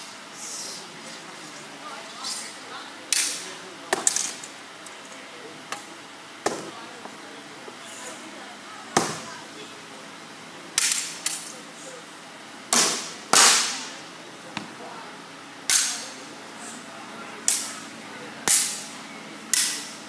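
Sharp cracks of practice weapons striking each other and a shield in a staged sword fight: about fifteen hits at an irregular pace, some in quick pairs, the loudest near the middle.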